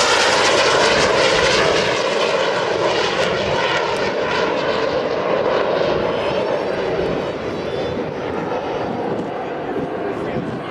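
Jet noise from a Learjet's twin turbojet engines as the jet flies past at low altitude and pulls up. It is loudest at first and eases slightly over the last few seconds as the jet climbs away.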